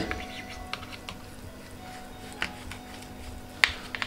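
A knife cutting through a slab of kalakand, its blade clicking and scraping against the bottom of a steel tray: a few scattered sharp clicks, the loudest near the end.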